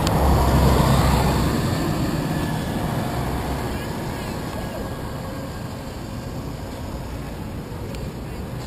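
A motorcoach passing close by, its diesel engine rumbling loudest in the first second or so, then fading as it moves away and leaving steady street traffic noise.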